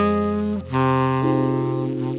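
A TenorMadness custom tenor saxophone with an Otto Link Tone Edge slant mouthpiece plays a slow jazz ballad melody: one note struck at the start and a new held note a little over half a second in. Under it sit sustained keyboard chords with long low bass notes.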